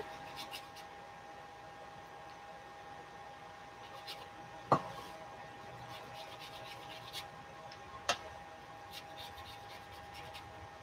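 Faint rubbing of a wet paintbrush stroked across watercolor paper, with two short clicks about three and a half seconds apart.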